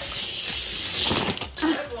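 Die-cast toy cars rolling down an orange plastic Hot Wheels track toward the finish, a continuous rushing noise that swells about a second in. A voice calls out near the end.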